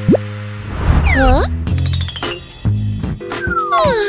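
Cartoon background music with quick rising plop-like sound effects, one just after the start and another a little after a second in, and falling sliding effects near the end.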